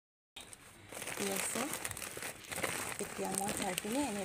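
Woven plastic sack rustling and crinkling as it is handled and tipped, with fertiliser spilling onto the soil; it starts abruptly a moment in.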